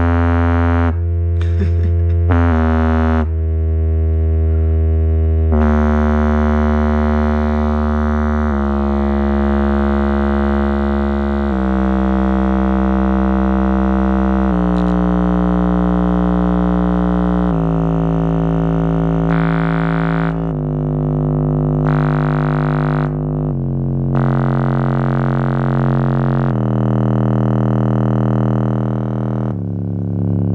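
Small 3-inch Logitech woofer playing a bass test sweep, a buzzy tone rich in overtones that steps down in pitch every few seconds from around 100 Hz toward the lowest frequencies. The cone moves visibly far with each low tone.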